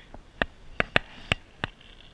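Five short, sharp clicks and taps, irregularly spaced over about a second and a half, from fishing rod and reel handling while a small bass is brought in.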